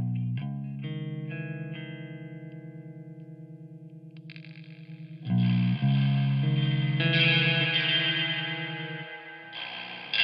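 Electric guitar played through the BlackSkyCraft Sunbros, a modulated, broken-spring-reverb-style effect pedal. A chord first rings out with a fast wobble. About five seconds in, a much louder, harsher chord is strummed and washes on, and another begins near the end.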